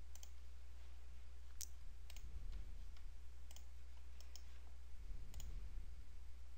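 Computer mouse buttons clicking about eight times at uneven intervals, selecting faces on a CAD model, over a low steady hum.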